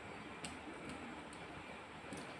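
Fingers mixing water-soaked rice in a steel plate, a faint wet squishing, with a few light sharp clicks about every half second.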